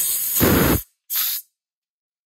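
Compressed air hissing out of an 8-gallon air compressor tank as the valve at the bottom of the tank is opened to let the air out. There are two bursts: a loud one lasting nearly a second, then a shorter one.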